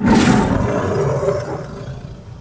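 A loud roar that starts suddenly and fades away over about two seconds.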